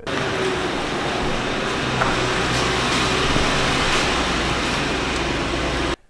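Toyota Land Cruiser 100 Series engine running steadily with a low hum as the SUV is driven into a garage.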